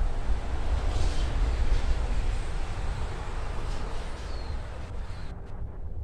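Wind buffeting the microphone: a steady low rumble with a broad hiss over it.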